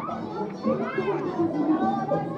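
Several people talking over one another, with one high voice calling out about a second in.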